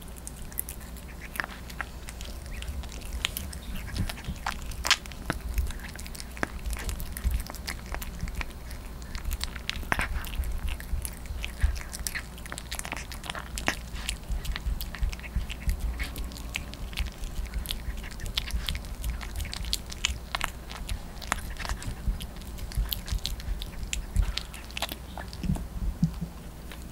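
Yorkshire terrier puppy chewing and licking minced raw meat, close to the microphone: a run of irregular small mouth clicks and smacks with no steady rhythm.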